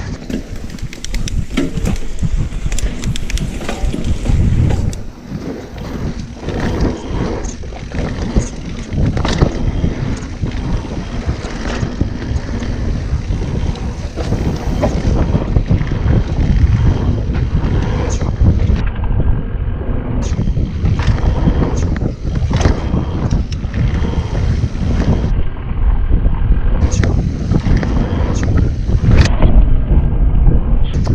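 Wind buffeting the microphone of a mountain bike's handlebar-mounted camera as the bike rolls fast over a dirt trail, with tyre noise and frequent short clicks and rattles from the bike over bumps.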